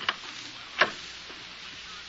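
Radio-drama sound effect of a single sharp knock about a second in, over the steady hiss and crackle of an old broadcast transcription recording.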